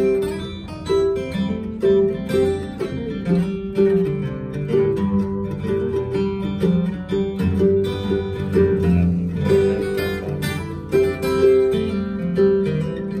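A 1924 Gibson Lloyd Loar F5 mandolin and a 1935 Martin D-28 herringbone guitar with Brazilian rosewood back and sides and a red spruce top, played together as an instrumental duet. Picked mandolin notes run over the guitar's accompaniment with a steady beat.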